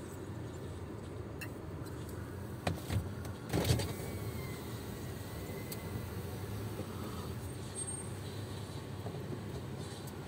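Car's steady low engine rumble heard from inside the cabin, with a few sharp clicks and a louder knock about three and a half seconds in.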